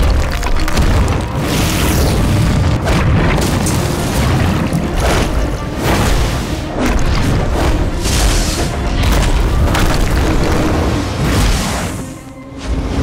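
Animated battle sound effects: repeated booming blasts and rushing whooshes of firebending and waterbending attacks over loud dramatic action music.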